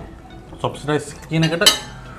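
Metal spoons and forks clinking and scraping on ceramic plates, with one sharp ringing clink near the end. Short vocal sounds from a man come in between.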